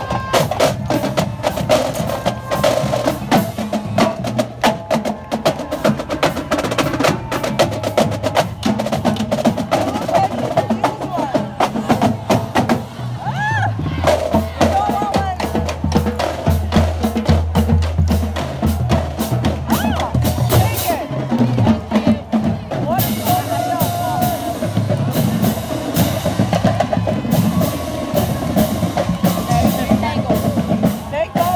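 Marching-band drumline playing snare drums and bass drums, a dense driving beat with rolls. A low sustained bass tone joins for several seconds in the middle.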